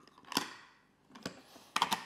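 Plastic puzzle blocks clicking and knocking as they are fitted into a toy truck's cargo box. A few separate clicks, the loudest about a third of a second in, then a quick run of small clacks near the end.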